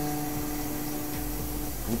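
Six-axis CNC router spindle running a finishing bit along the edge of a sunglass lens blank, deburring it: a steady hum with a hiss, its strongest tone stopping shortly before the end.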